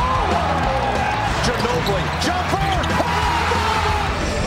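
Basketball game sound from an NBA arena, with crowd noise, short squeaks and the ball on the court, mixed under rock music with a steady bass.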